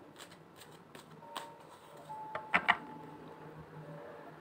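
A deck of tarot cards being shuffled by hand: quiet rustling and light clicks of the card edges, with two brief louder sounds about two and a half seconds in.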